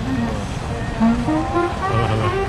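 Steady outdoor street ambience, a wash of background noise with passers-by, then music entering about a second in as a melody of short held notes.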